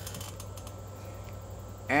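Quiet outdoor background between spoken sentences: a steady low hum with a faint high band, and a few faint clicks near the start.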